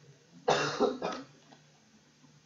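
A man coughing: two quick coughs about half a second in.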